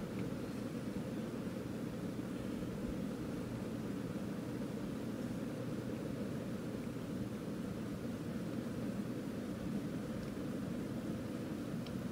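Steady low background hum with no distinct events: room tone.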